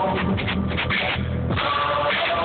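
Music with a drum beat playing on a car stereo, heard inside the car.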